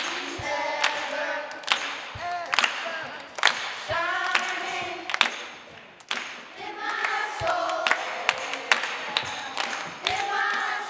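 Children's choir singing a gospel song, with hand claps about once a second.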